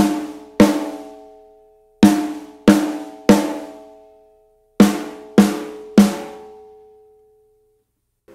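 Snare drum played with rimshots, the stick striking head and rim together: two strokes at the start, then two groups of three quick strokes. Each stroke has a sharp crack and rings on with a pitched overtone from the rim and shell that dies away over a second or more.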